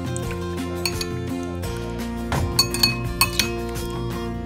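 A metal spoon clinking against a bowl as sliced white radish salad is stirred with its dressing, a few sharp clinks bunched in the second half, over steady background music.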